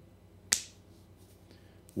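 A single sharp click about half a second in, dying away quickly, over faint room tone.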